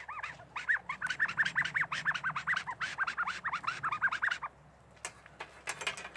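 A small hand-held bird call blown at the mouth, giving a quick run of short chirps, about six a second, imitating a small bird; it stops about four and a half seconds in, leaving a few faint clicks.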